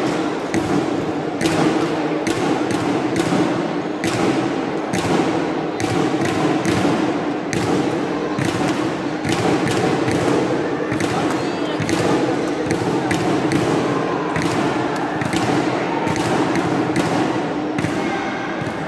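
Badminton rackets hitting shuttlecocks on several courts: many sharp hits at irregular intervals, over the steady din of a large sports hall.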